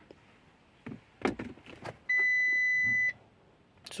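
A single steady electronic beep, one high flat tone about a second long that starts about halfway through and cuts off sharply, preceded by a few faint clicks.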